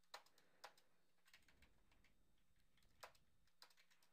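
A few faint computer keyboard keystrokes, scattered singly over near silence: two about half a second apart at the start, and two more about three seconds in.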